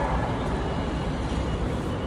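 Steady low rumble of road traffic and outdoor background noise, with no single event standing out.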